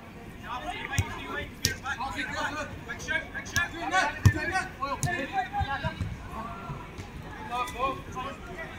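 Players' distant shouts and chatter across a 5-a-side pitch, with several sharp thuds of a football being kicked, the loudest about four seconds in.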